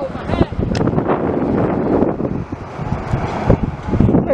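Strong gusty wind buffeting the microphone.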